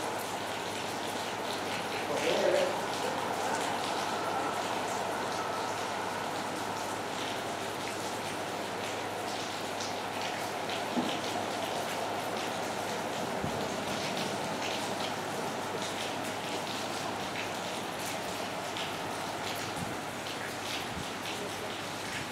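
Rain falling steadily: an even hiss scattered with small drip ticks. A voice is heard briefly in the first few seconds.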